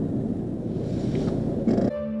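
Steady low rumble of a car's engine and tyres, heard from inside the cabin. It cuts off abruptly just before the end.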